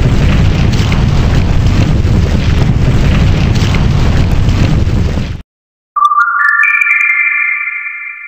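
Outro logo sound effects: a loud, noisy rumbling crash lasts about five and a half seconds and cuts off suddenly. After a short gap come a few clicks and a chime of notes stepping upward, which rings on and begins to fade near the end.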